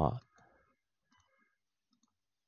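A man's voice says one short syllable right at the start, then only a few faint clicks.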